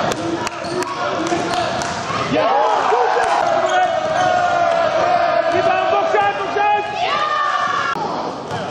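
Basketball game sounds in a sports hall: a ball bouncing on the court and many short high squeals from sneakers on the floor, with players' voices calling.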